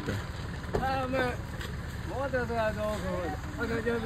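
Men's voices talking in short phrases over a steady low hum from a Ford Ranger pickup idling.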